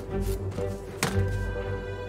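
Slow ambient fantasy music of sustained tones, with a single sharp knock about halfway through, one of the track's mixed-in shop sounds.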